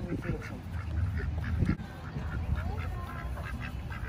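Domestic ducks calling with short, repeated quacks, several a second, over a low rumble.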